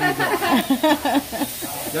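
Voices talking over the steady hiss of food sizzling on a hot hibachi griddle.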